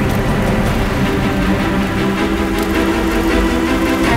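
Dramatic background score of sustained, held tones over a steady deep rumble, without a break.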